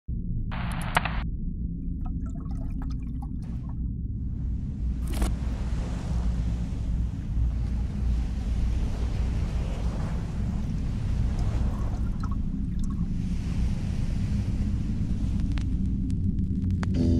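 Ocean ambience: a steady deep rumble with a wash of water noise that swells and ebbs like surf. There is a short hiss near the start and a single sharp click about five seconds in.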